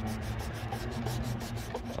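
Fingertip rubbing back and forth on vinyl siding in quick repeated strokes, working at green algae streaks that do not come off. A steady low hum runs underneath.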